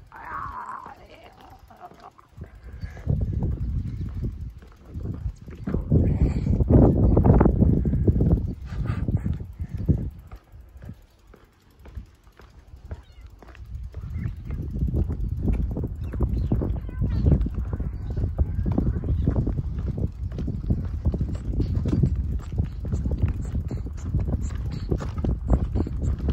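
Wind buffeting the microphone and tyre rumble from a bicycle riding on a paved trail, with irregular clicks and rattles. It swells, dies away briefly about halfway through, then builds again.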